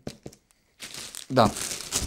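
Plastic shrink-wrap on a boxed headset crinkling as the box is handled and lifted. A few light clicks come near the start.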